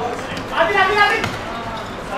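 Footballers shouting to one another on the pitch, loudest from about half a second to a second in, with thuds of the ball being kicked on the hard court.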